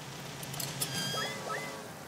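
Comedic sound effects dubbed in by the show: a few short, high, squeaky chirps, two of them rising, about a second in, over quiet background music.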